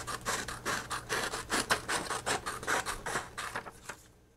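Scissors cutting through paper: a quick run of snips, several a second, fading away near the end.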